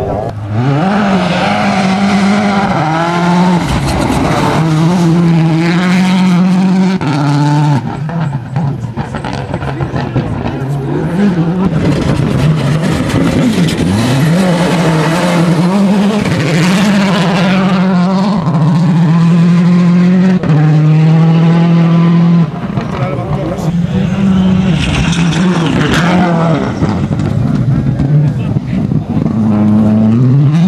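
Rally cars' turbocharged four-cylinder engines at full throttle on a gravel stage. The engine note climbs and drops again and again through gear changes and lifts off the throttle.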